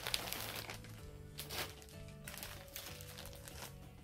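Clear plastic garment bag crinkling as it is handled and pulled about, heaviest in the first second, with a few more rustles after. Soft background music plays underneath.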